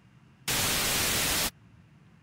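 A loud burst of electronic static, even hiss across the whole range, about a second long, switching on and off abruptly partway through. Faint low hum underneath before and after.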